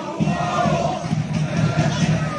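Large crowd of football supporters chanting together in the stands, a steady, loud mass of voices with no break.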